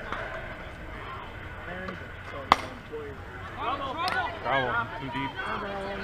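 Softball bat hitting a pitched softball: a single sharp crack about two and a half seconds in, followed by several people shouting.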